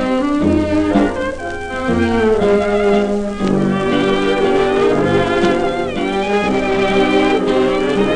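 Early-1930s dance orchestra playing an instrumental passage of a Viennese waltz, with no singing, heard from a 78 rpm shellac record.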